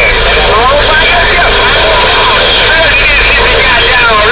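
Distorted, warbling voices of distant stations coming through a CB radio's speaker on channel 11, heard over a steady bed of static and hum.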